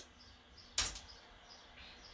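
A single sharp click from a laptop key or trackpad, pressed to advance a presentation slide, against quiet room tone.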